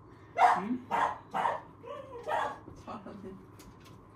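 Small puppy barking: about six short, sharp barks at irregular intervals, the first the loudest.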